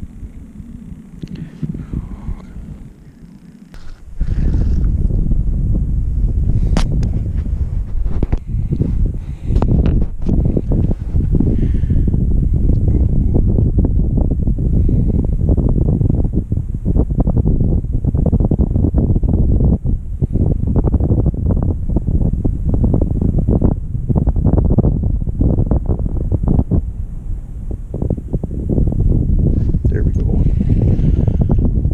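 Wind buffeting the camera microphone: a loud, uneven low rumble that starts about four seconds in, with a few sharp ticks of handling noise.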